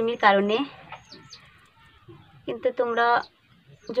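Two drawn-out animal calls, one at the start and another about two and a half seconds in.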